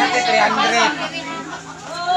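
People talking close by: voices chattering, dropping lower in the second half.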